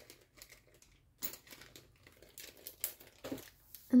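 Intermittent crinkling and light taps of packaging being handled as haul items are put down and picked up, loudest a little over a second in.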